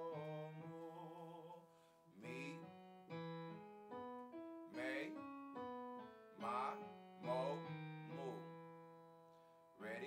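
Yamaha Motif XS8 keyboard on a piano sound, playing slow chords that ring and fade, a new chord every second or two. A man's voice sings a few short wavering notes over some of the chords.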